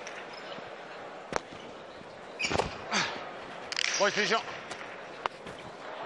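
Spectators' voices and murmur echoing in a jai alai fronton between points. Two sharp single knocks come about a second in and near the end, and a short voice calls out about four seconds in.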